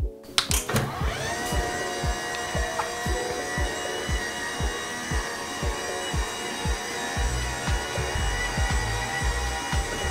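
Electric motors of a Jarvis standing desk running as the desk rises: a steady whine that glides up in pitch in the first second, then holds. Background music with a beat plays under it.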